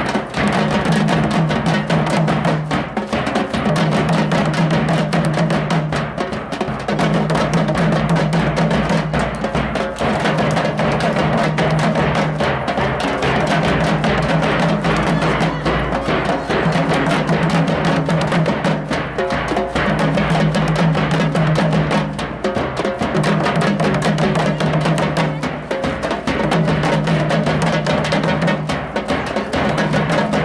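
Festival drumming on large double-headed bass drums with metal shells, struck with padded beaters in a fast, dense rhythm. The pattern runs in phrases of about three seconds, each ending in a brief break.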